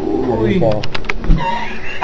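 A man's voice making wordless, coo-like vocal sounds that slide down and then up in pitch, with a few short clicks about a second in.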